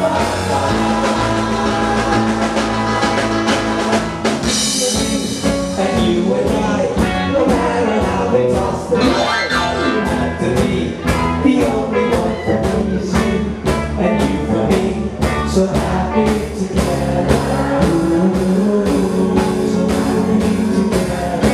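Live rock band playing a song with electric guitars, keyboard and drum kit over a steady drumbeat, with singing.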